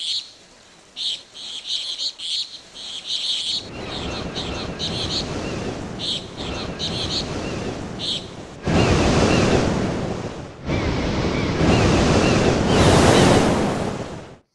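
Sea surf washing onto a beach: a rushing wash that builds over the first few seconds and then surges in loud twice in the second half. High chirping sounds in short bursts over the first half.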